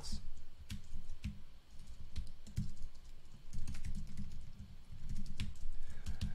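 Typing on a computer keyboard: irregular key clicks with short pauses between runs of keystrokes.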